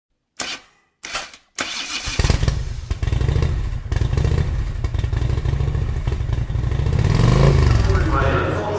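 Motorcycle engine starting: two short bursts, then it catches about a second and a half in and runs with a low, pulsing idle, rising briefly in pitch near the end.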